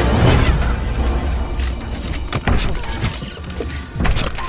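Film sound effects of a giant robot moving: metallic clanks and impacts over a deep rumble, with film score underneath.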